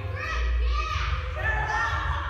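Children calling out and shouting while playing a ball game in a large gym hall.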